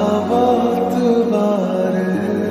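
Slowed-down Hindi film love song: a voice singing a held, bending melodic line over soft, steady accompaniment.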